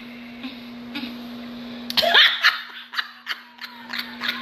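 A woman laughing: a loud burst about halfway in, then a few short laughs.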